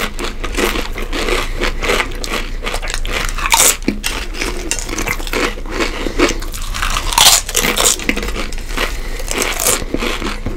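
Two people biting and chewing Flamin' Hot Doritos tortilla chips close to the microphone: dense, continuous crunching, with especially loud crunches a few seconds in and again past the middle.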